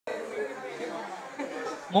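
Indistinct chatter of several people's voices talking at once.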